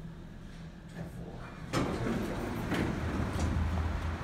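Otis traction elevator car with a low steady hum, then a sudden clunk about two seconds in as its doors slide open, followed by a steady rush of noise.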